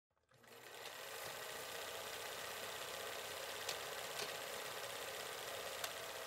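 A faint, steady mechanical whir that fades in over the first second and holds evenly, with a few faint clicks in the second half.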